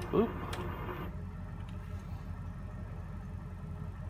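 A steady low hum, with one or two computer-keyboard key clicks in the first second.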